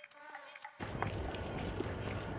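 Wind on the microphone aboard a sailboat: a steady rumbling rush that starts suddenly about a second in. Before that there is a faint steady tone.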